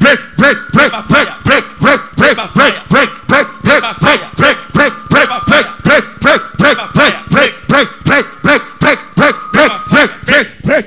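A man's voice through a microphone, repeating one short shouted syllable in an even rhythm of about three a second. A faint steady tone sounds underneath.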